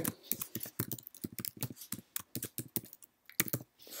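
Typing on a computer keyboard: a quick, irregular run of key clicks, with a brief pause about three seconds in.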